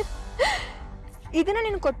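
A woman's short, sharp gasp about half a second in, then a woman's voice speaking, over dramatic background music.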